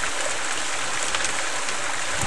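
Muddy water and dirt pouring steadily out of a homemade mini gold trommel's drum and splashing into the sluice box beneath it.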